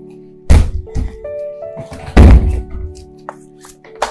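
Dramatic film score: held keyboard chords, struck through by two very loud, deep hits about a second and a half apart.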